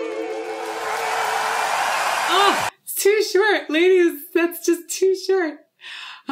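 A three-woman vocal trio's final held note, sung with vibrato, fades into concert crowd applause and cheering. The applause cuts off suddenly just under three seconds in, when the video is paused. A woman's short exclamations and laughter follow.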